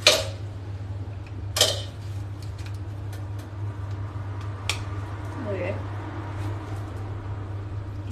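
Sharp plastic clicks of hair clippers being handled while a guard is fitted: three of them, the loudest at the very start, the next about a second and a half later and a lighter one near the middle. A steady low hum runs underneath.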